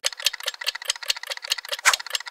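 Clock-ticking sound effect, sped up into a rapid run of sharp ticks, with one louder tick near the end, used as a time-passing transition.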